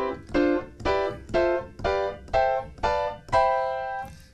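Piano playing four-note seventh chords up the C major scale, one chord about every half second, each step higher, with the last chord held.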